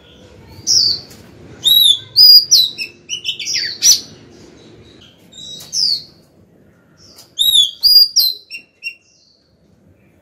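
Female oriental magpie-robin singing: short phrases of clear, swooping whistled notes, loudest in bursts about two to four seconds in and again about seven to eight seconds in, stopping near the end. Keepers use this female song to call a male.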